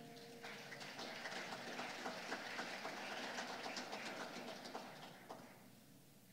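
Congregation applauding after a piano piece: a dense patter of many hands clapping that thins out and dies away after about five seconds, with the piano's last note fading under it at the start.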